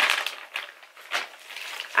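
Plastic bags crinkling and rustling as they are handled: a few separate crinkles with short pauses between them, as a frozen-fruit bag is put aside and a plastic trash bag is rummaged through.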